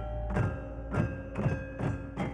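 Gamelan ensemble playing: bronze-keyed metallophones struck about twice a second, their notes ringing on between strikes, over beaten barrel drums.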